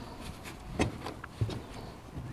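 Two light clicks about half a second apart as the glass door latches of a sun oven are unfastened by hand for opening.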